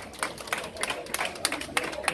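Applause from a small group of people clapping their hands: uneven, separate claps, several a second.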